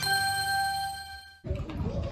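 A bright, bell-like chime note from the stage show's sound system, ringing and fading, cut off abruptly about one and a half seconds in. After that comes busy restaurant room noise.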